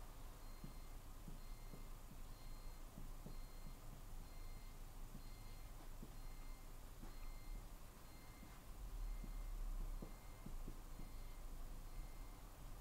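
Marker pen writing on a whiteboard, faint scattered strokes and taps. Behind it a faint electronic beep repeats about twice a second, and a low rumble swells for about a second near the end.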